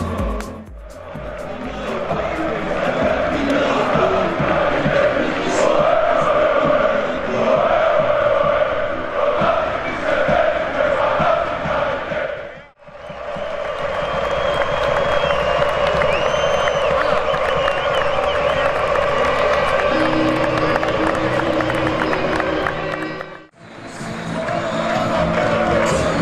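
Stadium crowd chanting and singing, heard in separate stretches with abrupt breaks about a second in, about halfway through and near the end.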